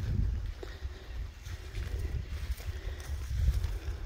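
Donkeys and people walking over leaf-littered sandy ground: a few soft footfalls and hoof steps over a low, uneven rumble.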